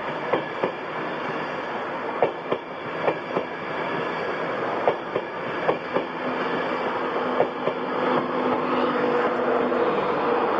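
Mk4 passenger coaches rolling past as the train pulls away, their wheels clacking over rail joints in irregular pairs of knocks. About eight seconds in, it grows louder with a steady electrical hum as the Class 91 electric locomotive at the rear goes by.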